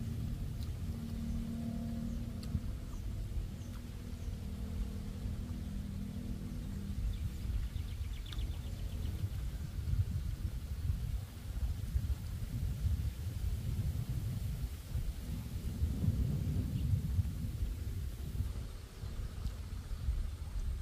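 Wind buffeting the microphone in gusts, a low rumble that swells and dips throughout. A faint steady low hum runs under it for the first few seconds.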